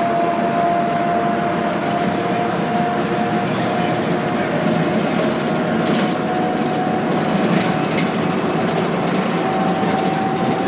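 Inside a moving city bus: steady engine and road drone with a thin whine held on one pitch, which steps slightly higher near the end, and a few brief rattles.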